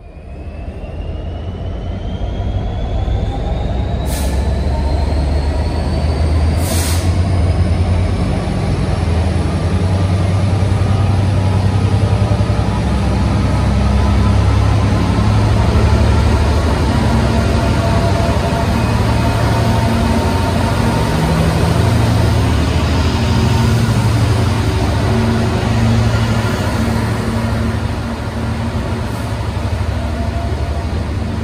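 DRS Class 66 diesel locomotive with an EMD two-stroke engine running as it approaches and passes close at the head of an intermodal container freight train. The deep engine sound builds over the first few seconds and then holds steady, with a rising whine early on and two short hisses around four and seven seconds in.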